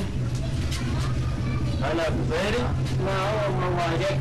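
A steady low mechanical hum, like a motor running, that starts abruptly with the scene, with men's voices talking over it from about halfway in.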